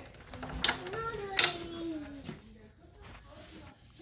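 Two sharp metallic clicks from a steel TV wall-mount bracket being worked with a tool, about half a second and a second and a half in, with a short quiet voice between them.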